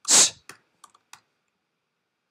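Computer keyboard typing: a short noisy burst at the start, then about four soft key clicks within the next second.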